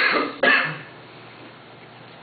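A person coughing twice, two short harsh coughs about half a second apart.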